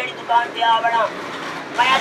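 A man talking, with a short pause about a second in that is filled by a steady background hiss.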